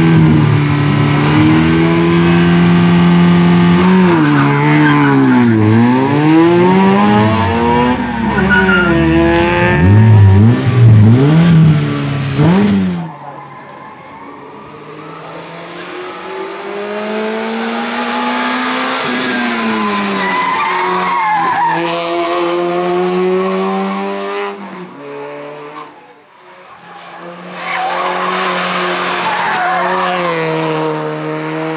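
Peugeot 106 hillclimb race car engine revved hard and repeatedly while stationary, the pitch sweeping up and down in quick blips. After about thirteen seconds it is heard from farther off, accelerating up the course with rising revs and gear changes, then louder again near the end.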